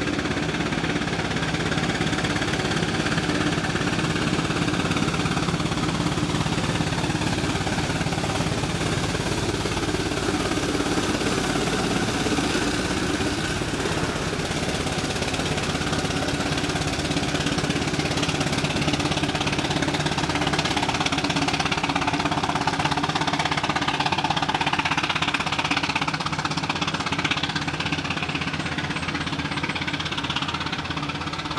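Steam omnibus running steadily along the road as it passes.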